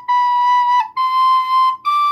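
A soprano recorder playing three held notes stepping up: B, then C about a second in, then high D near the end, each note clear and steady and cleanly tongued.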